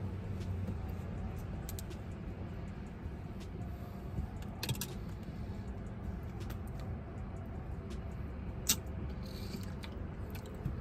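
Broken plastic spoon scraping and clicking in a milkshake cup as it is spooned out and eaten from, a few sharp clicks over the steady low hum inside a car cabin.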